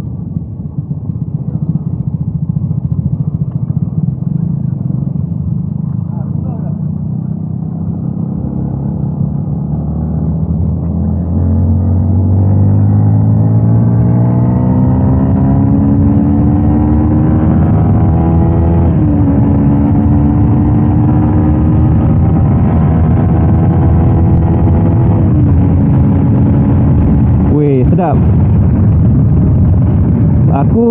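Onboard sound of a Yamaha Y16ZR VVA's single-cylinder engine under way. After a steady low rumble at cruising speed it is opened up about a third of the way in, its pitch rising for several seconds, then steps down slightly twice and holds a steady pitch at speed.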